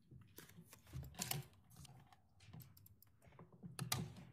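Faint, irregular clicking and tapping of a computer keyboard and mouse, picked up by a courtroom microphone, with a cluster of clicks about a second in and another near the end.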